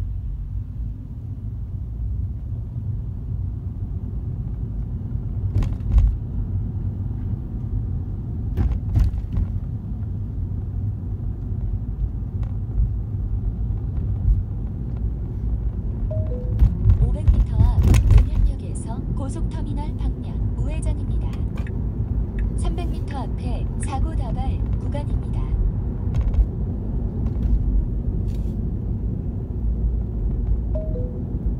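Steady low road and tyre rumble inside the cabin of a Tesla electric car driving in city traffic, with a few sharp knocks. Over the second half, faint voice- or music-like sounds and a short two-note tone come in over the rumble.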